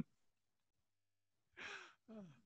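Near silence after laughter. About one and a half seconds in, a man lets out a breathy sigh that falls in pitch, winding down from the laugh.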